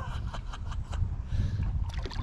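Wind buffeting the microphone as an uneven low rumble, with a scatter of small sharp clicks and ticks through it.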